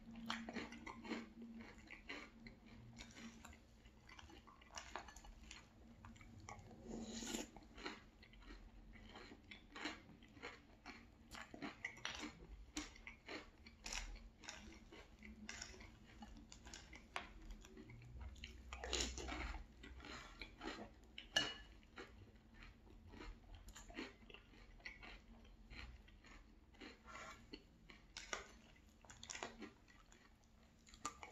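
Quiet close-up chewing of Very Berry Cheerios in milk: irregular soft crunches and mouth sounds, with now and then a spoon scooping in the glass bowl and one sharp click a little past the middle.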